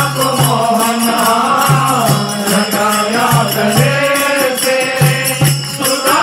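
Devotional bhajan: voices singing a chant-like melody, accompanied by small hand cymbals and a shaker that keep a fast steady beat, with a low note repeating underneath.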